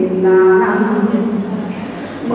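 A woman singing one long, low held note into a microphone at the close of a sung phrase in a Mường folk song, trailing off near the end.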